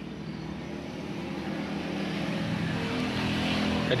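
A motor vehicle's engine, growing steadily louder as it approaches, with a low steady hum.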